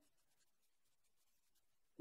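Near silence: a pause in a video call's audio.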